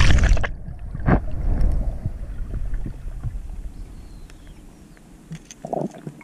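Water noise picked up by an underwater camera: loud splashy rushes at the start and again about a second in, as water moves and a hand knocks near the housing, dying away to a faint low hiss in the second half.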